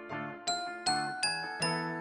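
Soft background music of bell-like struck notes, about two or three a second, each ringing on and fading before the next.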